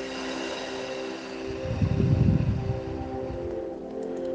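A slow breath out blown onto the microphone, a low rush of air lasting about a second and a half around the middle, over soft background music with sustained tones.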